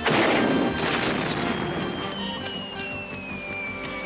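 Animated-cartoon sound effects over background music: a loud rush of gushing, splashing water at the start, then a long high tone that falls slowly in pitch.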